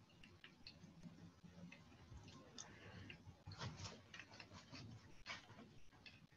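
Near silence: room tone with faint, irregularly spaced small clicks.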